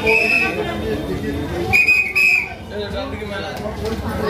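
A whistle blown in short shrill blasts of one steady high pitch, one at the start and two close together about two seconds in, over the chatter of a dense crowd.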